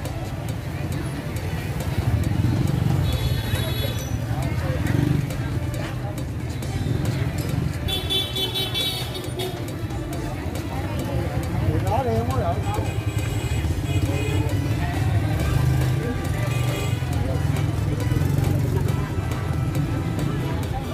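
Busy street ambience: many people talking at once over the running of motorbikes and cars, with music playing through it.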